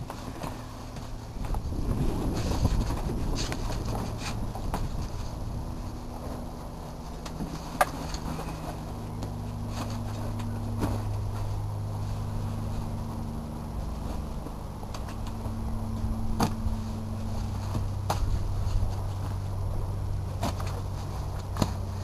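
Motorboat engine idling steadily with a low hum, with a few sharp knocks and clicks from the canopy frame and fittings being handled on board.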